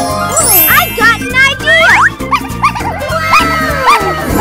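Children's background music with a steady beat. Near the start a tinkling sparkle sweeps upward, then a string of short squeaky cartoon chirps glides up and down in pitch.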